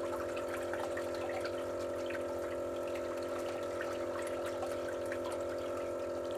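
Julabo ED immersion circulator running: its pump motor gives a steady, even hum while the circulated water splashes and trickles in the bath, with small scattered drips and bubbles.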